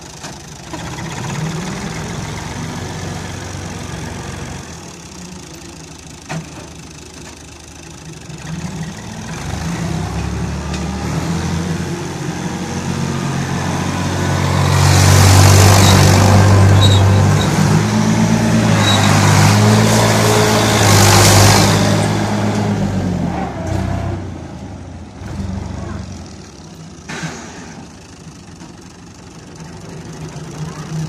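Türk Fiat 480 tractor's diesel engine running at low revs, then revved up from about a third of the way in and held high for several seconds while the tractor slides on mud, with a loud rushing noise over the engine at its peak, before settling back to a low steady run.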